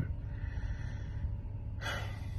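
Steady low rumble of a car cabin, with a man's quick, sharp breath near the end.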